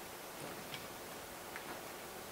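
Quiet room tone with a steady faint hiss and a few faint, irregular ticks.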